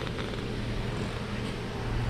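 Steady low hum under an even background hiss, the ambient noise of a workshop.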